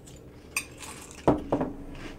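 Metal spoon clinking against a ceramic mug of cereal and milk: a light clink about half a second in, then a louder knock with a short ring just past the middle as the spoon goes back into the mug.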